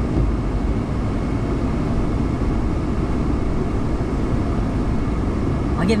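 Steady low rumble of tropical-storm wind buffeting a parked car, heard from inside the cabin.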